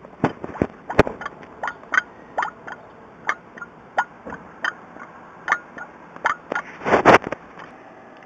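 Gas bubbling through water from under an inverted glass jar: short irregular plops, about two or three a second. The gas comes from copper dissolving in a nitric acid mixture. A louder rustling burst comes near the end.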